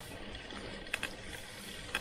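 Mountain bike rolling along a wet dirt path: a steady noise of tyres on wet ground, with two sharp clicks, one about a second in and one near the end.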